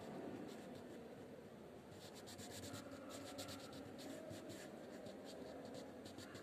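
Crayon rubbing on paper in quick back-and-forth colouring strokes, faint and scratchy, the strokes coming thick and fast from about two seconds in.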